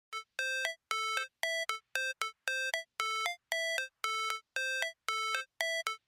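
Intro music: a short pitched two-note figure repeated about twice a second, each low note stepping briefly up at its end.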